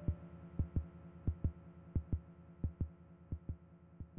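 Synthesized kick drum from a modular synth, left on its own at the end of the track. It plays in close double hits like a heartbeat, about three pairs every two seconds, over a faint low hum, and fades as it goes.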